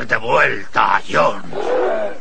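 Cartoon farm animals crying out in alarm, cows among them: a quick run of about four pitched, wavering calls, the last one longer and lower.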